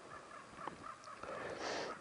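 Quiet woodland ambience with faint bird calls, and a short breathy hiss near the end.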